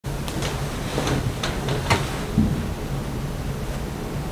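A low steady hum with a few light clicks and knocks in the first two seconds and a soft low thump about two and a half seconds in: the handling sounds of a person moving about and settling in front of the camera.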